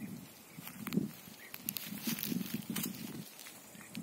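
Soft, irregular footsteps on a grassy pine-forest floor, with light rustling.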